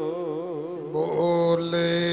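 Gurbani kirtan: a singer holds a long note with an even vibrato over a harmonium's steady drone. About a second in the voice breaks off and the harmonium's level held chord carries on alone.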